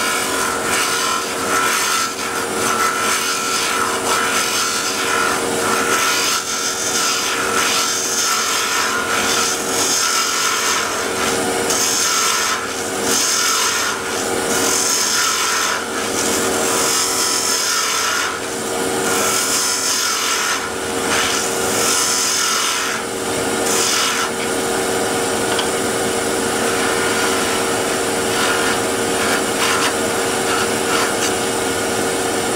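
Wood lathe running with a steady hum while a hand-held turning tool cuts a walnut bottle stopper blank. The cutting makes a hiss that comes and goes with each pass, evener near the end. The blank is held on a homemade wooden arbor and is cutting without chatter.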